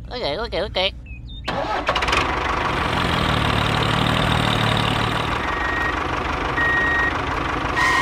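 Tractor engine starting about a second and a half in and then running steadily, with a deeper rumble in the middle.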